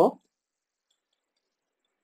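A man's spoken word ends just at the start. Then comes near silence with only a few faint ticks.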